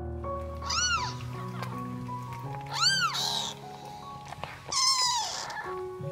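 Three high-pitched mews from newborn Siamese kittens, at about one, three and five seconds, each rising then falling in pitch, over soft background piano music.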